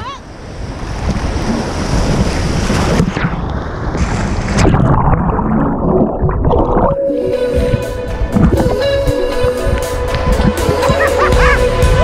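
Rushing whitewater of river rapids around a swimmer, heard partly with the microphone dipping underwater into a muffled gurgling. About seven seconds in, music starts with a steady held note and a beat, and runs on over the water.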